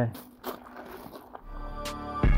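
Footsteps crunching on a gravel driveway, faint, then music with a deep bass fades in near the end.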